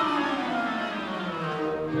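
Orchestral music led by bowed strings, with violins and cellos. A falling phrase dies down to a softer passage about a second in.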